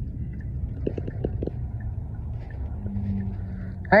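Steady low rumble of a car's engine and road noise heard from inside the moving car, with a few faint short ticks about a second in and a brief steady low hum near the end.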